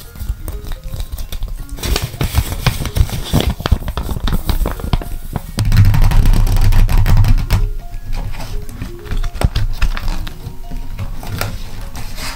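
Paper being handled over light background music: a paper face-mask cutout crinkles and rustles as it is bent, then hands rub and tap on a spiral notebook's cover and lift it. A heavy low rumble of handling noise comes about six seconds in.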